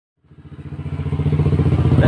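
An engine running steadily with an even, fast pulse, fading in over the first second and then holding.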